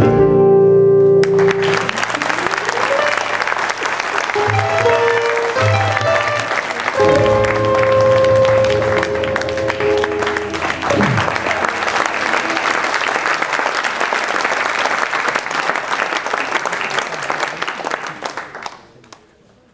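A gypsy-jazz quartet of clarinet, two acoustic guitars and double bass ends on a held final chord, and audience applause breaks out about a second in and runs on. A few held instrument notes sound over the clapping in the middle, one of them sliding down in pitch.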